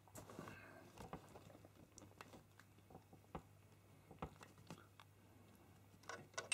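Near silence with faint, scattered clicks and small contact sounds from a water-cooling compression fitting being worked by hand: soft tubing is pushed onto its barb and the knurled compression ring is turned. A low, steady hum lies underneath.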